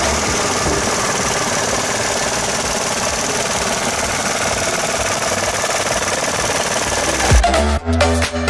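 Dodge Attitude's 1.2-litre three-cylinder engine idling steadily, heard at the open engine bay. Dance music comes back in near the end.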